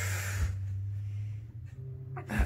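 A man's long, forceful breath out, fading about half a second in, as he holds his glute down on a spiky massage ball over a tender spot; a steady low hum runs underneath.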